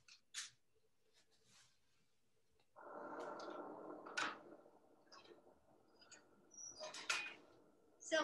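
Gas enamelling kiln being lit: a couple of clicks, then about three seconds in the gas burner catches with a sudden rushing sound that fades over the next two seconds. A few short handling clicks follow near the end.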